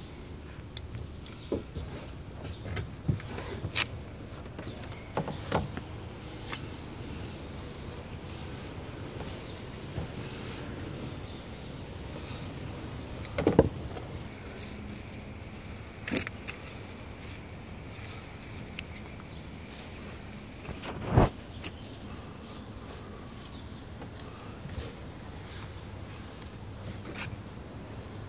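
Handling noises from rolling thickened epoxy onto a wooden beam with a small paint roller and tray: scattered light knocks and clicks, with two louder thumps about 13 and 21 seconds in. A steady high-pitched tone runs underneath.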